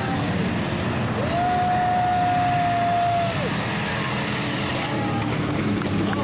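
Engines of several spectator-class stock cars running hard around the oval, a continuous mixed engine noise. About a second in, a single steady held tone rises over it for about two seconds and then drops away.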